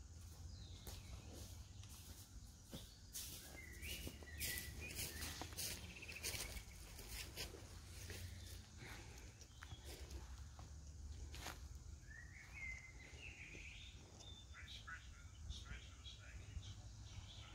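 Faint woodland birdsong, short chirping calls heard twice, over a low rumble, with scattered clicks and rustles of handling or steps on leaf litter.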